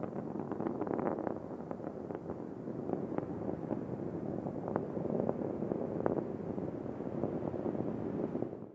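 Space Shuttle Discovery's rocket engines and solid rocket boosters heard from the ground during ascent: a steady low rumble broken by irregular sharp crackles.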